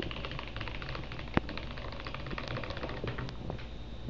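Stick blender running in cold-process soap batter in a plastic jug, a steady low hum under a rapid, fine clicking rattle, with one sharper knock about a third of the way in. The batter is being blended up to trace after juice has been added.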